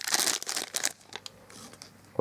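Thin clear plastic bag crinkling as a small plastic toy is pulled out of it, busiest in the first second and then dying down to a few faint rustles and clicks.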